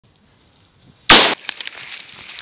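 A single loud firecracker bang about a second in, fading quickly, followed by a few faint ticks.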